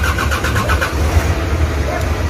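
A motor vehicle's engine running with a steady low rumble, with a quick, even clatter of about ten clicks a second during the first second.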